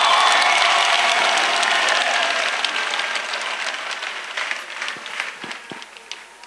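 A congregation applauding: dense clapping that gradually dies away, thinning to a few scattered claps near the end.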